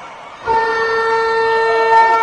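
An ice rink's horn sounding one long, steady, loud blast that starts suddenly about half a second in.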